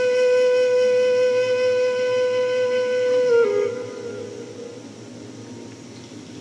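A flute holding one long steady note, which steps down to a slightly lower note a little past halfway and fades out.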